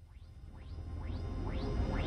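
Electronic trance music fading in from silence and growing steadily louder. A low bass drone sits under a short rising sweep that repeats about twice a second.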